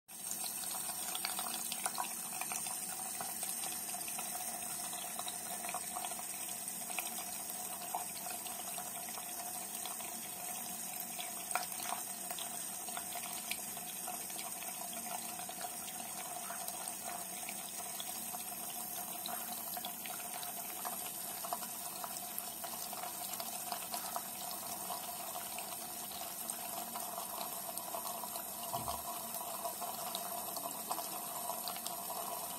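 Tap water running steadily into a sink, with occasional short clicks over it.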